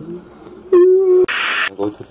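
A person's voice holds a short, steady 'aah' for about half a second in the middle, followed at once by a brief loud hiss.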